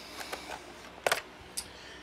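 A few light clicks of handling a plastic radio-control transmitter as its clip-on cover is worked open, with one sharp click about a second in.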